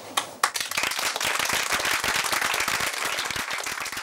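Audience applauding at the end of a talk: a couple of single claps, then steady clapping from many hands starting about half a second in.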